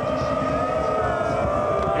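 A group of voices holding one long drawn-out 'ooooh' in chorus, the build-up chant before a trophy is lifted.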